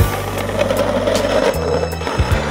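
Skateboard grinding down a stair ledge: a steady, gritty scrape that starts just after the beginning and ends shortly before the close, over a music track.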